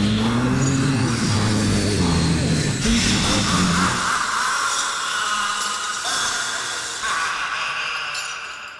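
Layered horror sound effects: a low, wavering drone under a noisy wash for about four seconds, then only a higher, hissing eerie noise.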